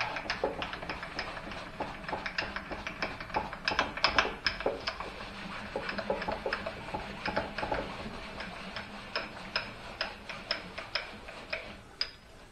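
Y-axis handwheel of a mini mill's cross-slide table being cranked steadily, driving the table along its lead screw, heard as a continuous stream of irregular metallic clicks and ticks over a faint steady hum.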